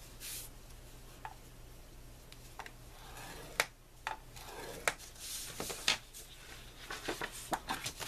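A stylus scoring 65 lb black cardstock on a scoring board: several short scraping strokes, each ending in a light click, with paper sliding over the board as the sheet is moved near the end.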